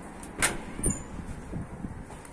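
A door's lever handle pressed and its latch clicking open, a sharp click about half a second in, followed by a brief high squeak and a few softer knocks as the door is pushed open.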